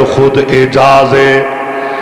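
A man's voice chanting in long, held notes through a microphone and loudspeakers, in the sung style of a majlis orator's recitation, softening near the end.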